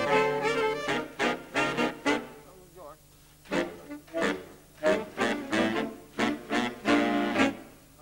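A saxophone section plays a jazz phrase together in short, detached notes. It breaks off about two seconds in, then comes in again about a second later and plays on until near the end.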